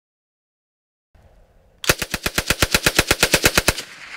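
Czech Sa vz. 26 submachine gun, an open-bolt 7.62x25mm Tokarev SMG, firing a fully automatic burst of about twenty rounds at roughly ten shots a second, lasting about two seconds and ending with a short echo.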